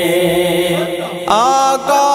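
Devotional naat singing: a voice holds a long note, then just over a second in a new, higher vocal line comes in with sliding, ornamented pitch.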